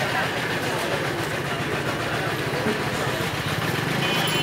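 Outdoor market ambience: indistinct voices over a steady low engine-like hum, with no single sound standing out.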